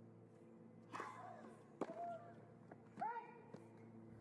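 Tennis rally: three sharp pops of racket on ball, the first about a second in and the others close to a second apart, each with a short vocal grunt from the hitting player. A faint steady hum sits underneath.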